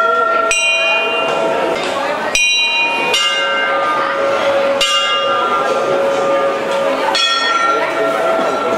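Temple bells being rung, about five irregular strikes of bells of different pitch, each ringing on and fading, over the chatter of a crowd.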